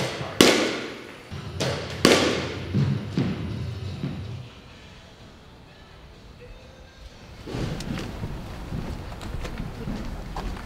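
Softballs thrown in an indoor cage, landing with two loud thuds about a second and a half apart and a few fainter knocks after.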